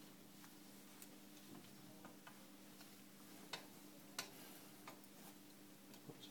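Quiet, scattered metallic clicks of hand tools working on the rings and bolts of an Ilizarov external fixator as it is taken apart, with two louder clicks about three and a half and four seconds in, over a low steady hum.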